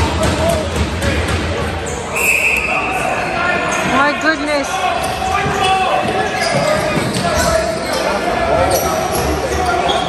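Box lacrosse play echoing in an indoor arena: repeated knocks of the hard rubber ball and sticks against the floor and boards, with players calling out. A brief high steady tone sounds about two seconds in.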